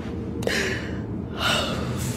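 Two short breathy gasps from a voice, about half a second and a second and a half in, over a soft, low music bed at the close of the song.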